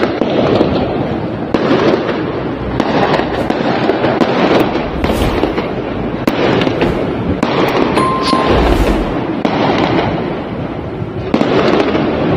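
Aerial fireworks bursting and crackling: a dense run of sharp pops and crackle that swells every second or two.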